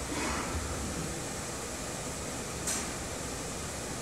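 Steady room hum with air noise, and a short hiss about two and a half seconds in.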